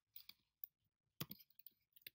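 Faint keystrokes on a computer keyboard: a handful of scattered clicks as code is typed, the loudest a little over a second in.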